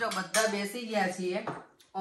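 Spoons and dishes clinking a few times as people eat at a table, under a woman's voice talking.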